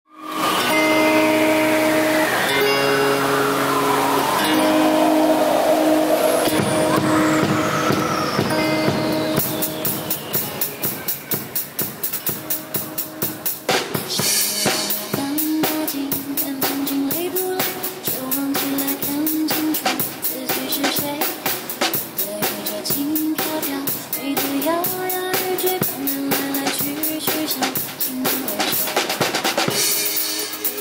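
Acoustic drum kit played live along to a recorded pop backing track. The track opens with held chords and a long falling sweep; about nine seconds in, the drums and cymbals come in with a steady beat under the song's melody.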